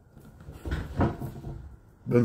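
A few low thumps and rustles of handling close to the microphone, as a person shifts and reaches about right beside it.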